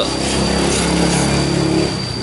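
A motor running steadily, a low pitched drone that fades near the end.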